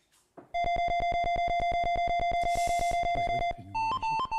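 Electronic game-show sound effect for filling the number-ball grid: a steady synthesized tone pulsing rapidly and evenly for about three seconds. It stops near the end and a higher electronic tone follows.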